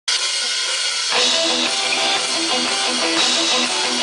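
A live rock band playing loud. A high, hissy wash fills the first second, then drums and electric guitar come in together on a repeating riff.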